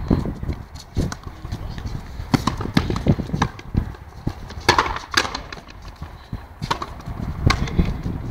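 A frontenis rally: sharp, irregular knocks as the ball is struck by rackets and slaps against the fronton wall and floor, the strongest hits around the middle.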